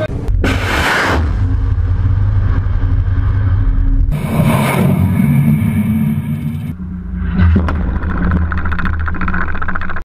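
Anti-ship missile launch from a warship, heard as a deep, steady rumble of the rocket motor. A loud rushing blast comes about half a second in, and the sound changes abruptly around four and again around seven seconds.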